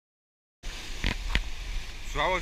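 Silence for about half a second, then ocean surf washing around rocks, with wind rumbling on the microphone and two light clicks a little after a second in.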